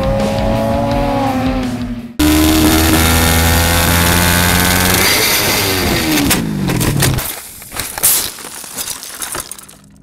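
The tail of the intro music, then a cut to a sportbike engine at high revs heard from the onboard camera. Its pitch holds steady, then falls over a couple of seconds as the revs drop. After that the sound turns quieter, with one sharp knock in the last seconds, and fades out.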